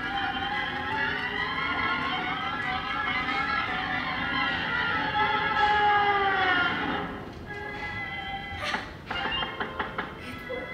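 Cartoon soundtrack music playing from a DVD through a television's speakers; the disc plays on without skipping after its banana-peel repair. The music is fuller for about seven seconds, then drops to a quieter passage with a few short sharp sounds near the end.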